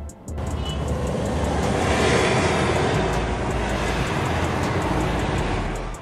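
Ford Endeavour's tuned 3.2-litre five-cylinder diesel pulling the SUV along a road: a steady rushing sound that swells about a second in and eases off near the end. Background music with a low beat plays underneath.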